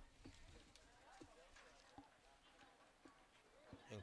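Near silence, with faint distant voices and a few faint clicks.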